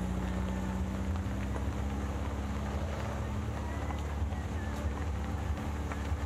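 Vintage Volkswagen bus driving slowly on a dirt road: a steady low engine rumble with a constant drone, mixed with wind on the microphone.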